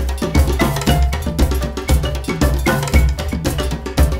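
Upbeat intro music with a steady beat: dense percussion strikes and pitched notes over a heavy bass pulse that returns about once a second.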